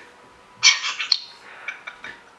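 A burst of high-pitched, squeaky laughter starting about half a second in, trailing off into a few short squeaks.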